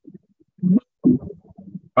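A muffled, broken-up voice in short low bursts, the loudest about two-thirds of a second in and again around one second in.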